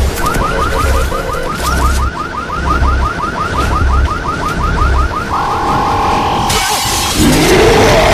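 Horror trailer soundtrack: a low pulsing beat under a rapid, repeating rising electronic chirp, about six a second. About five seconds in the chirps give way to a steady high tone, and then a loud noisy whoosh swells near the end.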